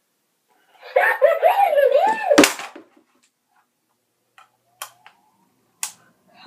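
A high-pitched voice speaking for about two seconds, broken by a sharp thump: a talking toucan toy knocked over or dropped, which the owner fears has broken it. A few light clicks follow, then a sharper knock near the end.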